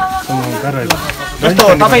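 A man talking in an interview, his voice picked up close by a handheld microphone, with a couple of sharp clicks under the speech.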